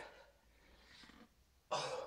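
A person's short, forceful exhale near the end, heard against an otherwise quiet room. It comes during a hard set of push-ups.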